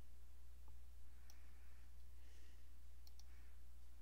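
A few faint computer mouse clicks as a slider is grabbed and released on screen, over a steady low electrical hum.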